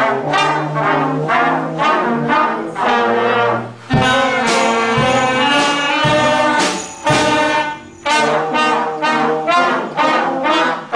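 School concert band of saxophones, trombones, low brass and clarinets playing a tune together in sustained chords, with short breaths between phrases. Low thumps fall about once a second through the middle.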